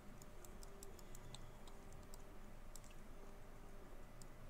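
Faint, irregular clicks from a computer mouse and keyboard, a few a second, as the 3D view is worked, over a faint low hum.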